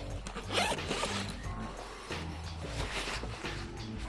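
Zipper on an insulated food-delivery backpack being pulled along in a few short strokes.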